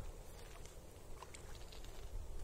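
Faint splashing of a hooked chub thrashing at the water surface, a few small splashes in the middle, over a low wind rumble on the microphone.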